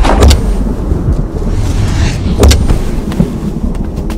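Film sound effects of a stopped Mercedes-Benz SUV: a low, steady engine rumble with sharp car-door clunks just after the start and again about two and a half seconds in.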